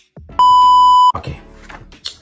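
A single loud, steady, high electronic beep lasting under a second, an edited-in beep at a cut in the video, followed by a man's voice.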